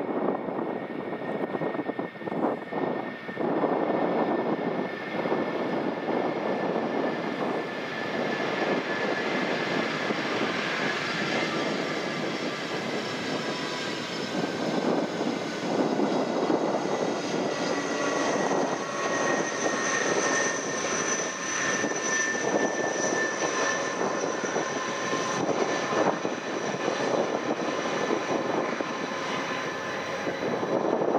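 Airbus A300-600R freighter's Pratt & Whitney PW4158 turbofans running during the landing roll, a steady jet noise with several high whining tones that slowly drift lower.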